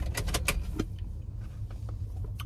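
Steady low rumble inside a car's cabin, with a few short clicks in the first second as an iced drink is sipped through a straw.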